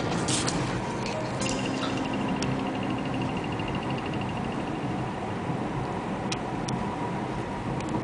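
Steady road and engine noise inside the cabin of a moving Toyota Corolla, with a few sharp light clicks and a couple of seconds of rapid high ticking about a second and a half in.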